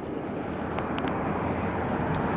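Road traffic: a vehicle approaching, its noise growing steadily louder, with a few faint clicks.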